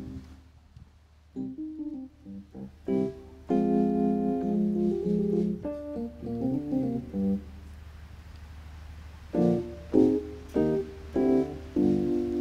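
Electronic keyboard played solo: a few short notes, then held chords and quicker runs, a pause of about two seconds, and more chords near the end.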